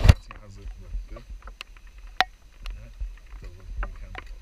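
Footsteps on wooden stairs with metal-grate treads: scattered sharp clicks and knocks, one sharper clink about two seconds in, over a low wind rumble on the microphone. Faint voices murmur in the background.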